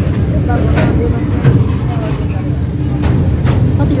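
Indian Railways goods train of BOXNHL open wagons rolling past close by: a loud, steady rumble of wheels on rail with scattered clicks as the wagons go over the track.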